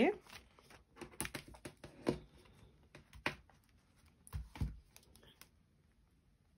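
Polymer £5 banknotes and plastic binder pockets being handled, with scattered sharp crinkles and rustles. Two duller knocks come about four and a half seconds in.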